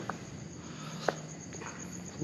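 Insects trilling steadily in a high, evenly pulsing tone, with two soft knocks about a second apart.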